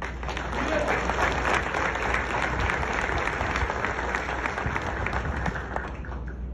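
An audience applauding: many people clapping in a dense, steady patter that stops near the end.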